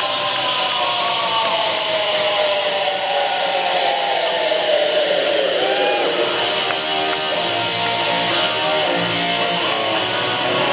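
Live electric guitar playing alone, long sustained notes that slide slowly downward in pitch over the first several seconds, then wavering held notes.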